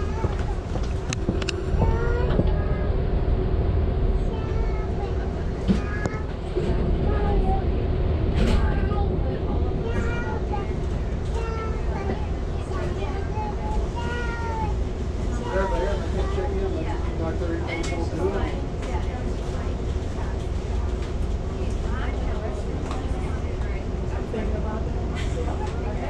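Steady low rumble and hum of an Amtrak passenger train running, heard from inside the coach, with indistinct chatter of other passengers over it.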